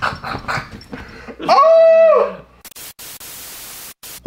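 A short, loud, high-pitched call that rises and then falls in pitch, followed about a second later by a burst of even TV-static hiss lasting just over a second.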